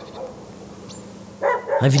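A dog barking in short calls, once right at the start and again about a second and a half in, with quiet outdoor ambience between.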